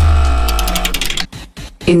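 Short musical transition sting between news items: a deep boom under a ringing electronic chord with fast ticking, fading out about a second in.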